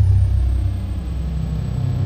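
Cinematic title-animation sound effect: a loud, deep, steady rumble with a thin high tone that glides down in pitch and then holds.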